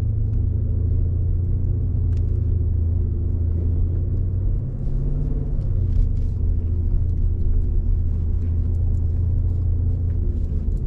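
2020 Jeep Grand Cherokee SRT's 6.4-litre HEMI V8 running at low revs at slow city speed, heard inside the cabin as a steady low rumble, its note briefly rising about five seconds in.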